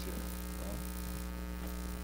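Steady electrical mains hum: a constant low hum with a ladder of overtones, unchanging throughout.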